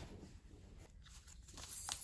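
Faint rustling of a paper envelope and packages being handled, with a light click near the end.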